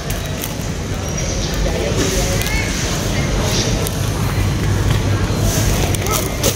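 Busy supermarket background noise: a steady low rumble and hum with faint voices of other shoppers.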